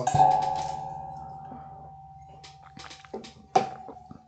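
A single bell-like chime is struck once just after the start and rings at one steady pitch, fading slowly over about three seconds. A few sharp clicks come near the end.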